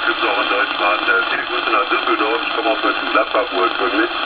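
A distant station's voice received over a CB radio on upper sideband. It sounds thin and band-limited, with a steady hiss of band noise underneath.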